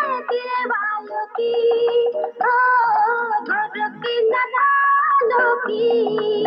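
A song playing: a high voice sings a gliding melody over a steady bass accompaniment.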